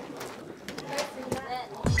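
Instant cup ramen noodles being slurped and eaten: short, noisy slurps with soft murmured "mm" sounds of enjoyment. A voice starts right at the end.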